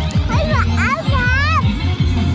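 A small girl's high-pitched voice calling out in a few short rising-and-falling cries, over background music with a repeating deep bass beat.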